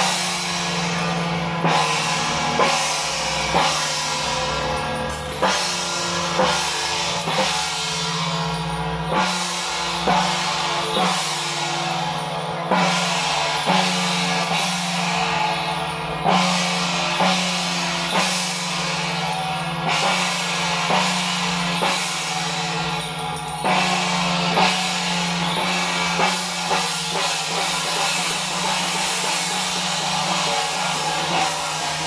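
Hand-held frame drum and large cymbals beaten in a loud, repeating rhythm of strokes roughly once a second, the cymbals ringing on between strokes: the drum-and-cymbal accompaniment that keeps time for a Guan Jiang Shou troupe's ritual steps.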